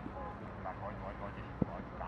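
A man calling to a child over low outdoor background noise, with one short sharp knock about one and a half seconds in, a ball being kicked.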